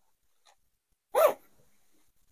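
A dog barks once, a single short bark about a second in, with near silence around it.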